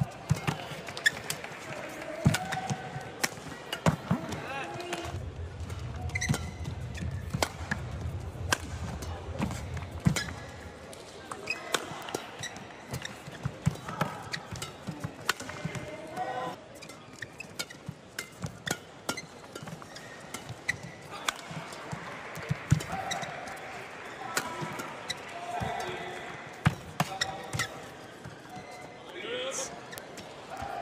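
Badminton rallies: rackets striking the shuttlecock in sharp, irregular cracks, with short squeaks of players' shoes on the court mat, echoing in a large arena.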